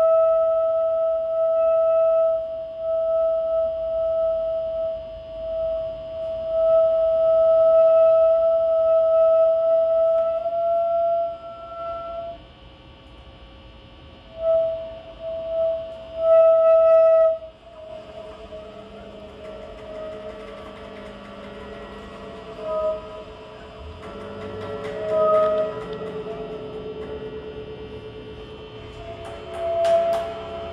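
Alto saxophone holding one long, steady note for about twelve seconds, then a few short notes at the same pitch. After that the playing drops to quieter, lower sustained tones.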